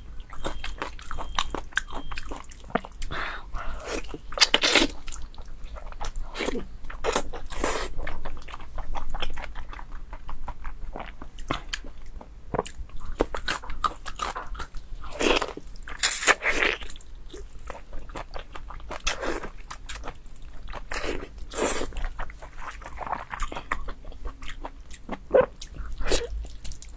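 Close-miked eating sounds of soft, fatty pork in sauce: a person biting and chewing with her mouth, making a dense, irregular run of wet clicks and smacks, with louder bites every second or two.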